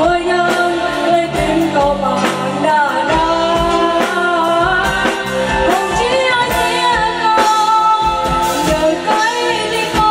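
A woman singing a pop-style song into a microphone, backed by a live band with drum kit and electric keyboard, the drums keeping a steady beat under the sung melody.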